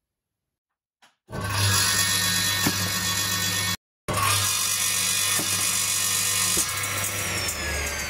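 Circular saw running at speed, a loud steady hum with a high whine, cut off sharply once and starting again a moment later. Pears are dropped onto the spinning blade: a few sharp knocks, and the motor's hum sags in pitch under the load near the end.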